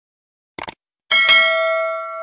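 A quick double click, like a mouse click, then a bell-chime sound effect about a second in. The chime is struck twice in quick succession and rings on with several steady tones, fading slowly.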